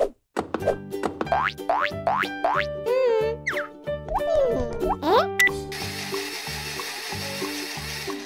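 A run of quick rising whistle-like cartoon sound effects, one after another, as grapes drop into a blender jug, over bouncy children's music. From a little before six seconds a steady noisy whir of the blender running, which blends the grapes into juice.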